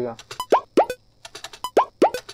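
Programmed beat played back from the sequencer: pitch-transposed hudka drum samples make short strokes that sweep upward in pitch, with sharp clicky hits. The same short phrase repeats about a second and a quarter later.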